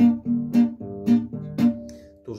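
Nylon-string classical guitar playing a two-finger strumming pattern: the thumb plucks alternating bass notes and the index finger brushes down across the strings once after each, about two strums a second.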